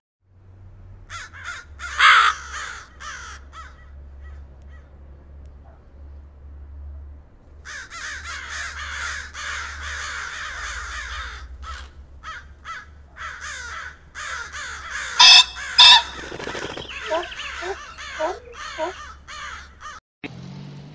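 Birds calling: scattered calls, a dense run of overlapping calls between about eight and eleven seconds, and two loud short calls about fifteen and sixteen seconds in, over a steady low hum.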